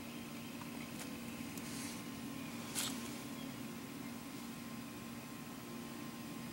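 Quiet background with a steady faint hum and a few soft clicks, the clearest about three seconds in.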